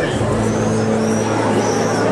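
Busy street ambience: a crowd of people talking in the background over a steady low motor hum from traffic.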